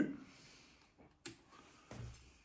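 A single sharp click about a second in, from a button on the portable Bluetooth speaker's top control panel being pressed, with faint handling sounds around it.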